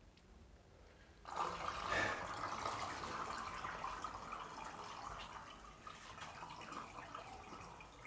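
Water from the flooded tiled shower floor draining down the open shower drain, a steady run of water that starts about a second in.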